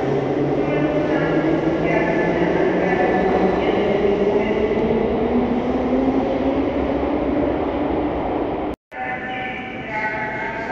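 Subway train pulling out of the station, its traction motors whining and rising slowly in pitch as it gathers speed over the rumble of wheels on the rails. The sound breaks off abruptly near the end and comes back quieter.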